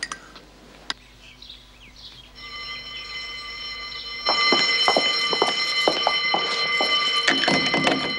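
An electric alarm bell rings steadily, starting about two seconds in and jumping much louder about four seconds in. Over it comes a run of sharp metallic clicks and knocks: a cell door being unlocked.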